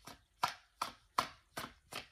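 Tarot cards shuffled by hand, a packet of cards slapping into the rest of the deck about six times, evenly, a little over twice a second.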